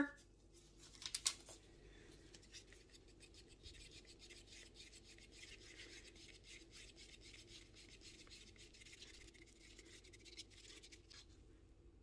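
Faint, rapid scraping of a wooden craft stick stirring a thin mix of gel stain and Floetrol in a plastic cup. A couple of light knocks come about a second in.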